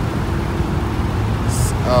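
Road traffic on a busy multi-lane street: a steady low rumble of engines and tyres.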